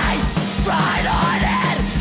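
Folk punk band playing loud: electric guitar and bass holding a note over a fast, steady kick-drum beat, with a shouted vocal on top.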